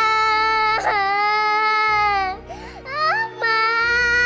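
A young girl wailing: two long, high held cries broken by a short catch of breath and a sob about two and a half seconds in.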